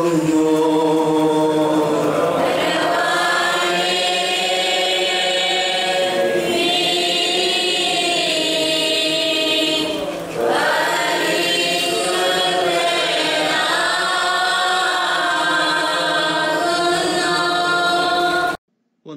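Voices singing a slow liturgical chant in long held notes, with a brief pause for breath about ten seconds in.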